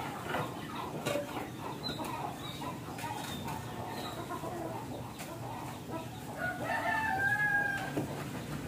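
Chickens clucking, with a rooster crowing in one long call near the end.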